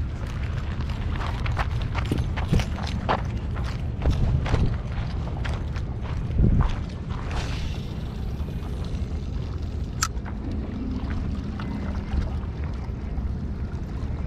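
Wind rumbling on the microphone, with crunching steps and clicks of rod and reel handling. About seven seconds in comes a hiss, fitting line paying out from a spinning reel on a cast, and then a single sharp click about ten seconds in.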